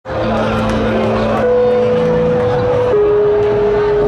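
Live rock band playing loud through the festival sound system, heard from within the crowd: long held notes, three in turn, each a step lower than the last, over a bed of crowd noise.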